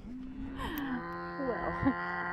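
Cattle mooing: one long, held moo begins about half a second in, with shorter calls overlapping it.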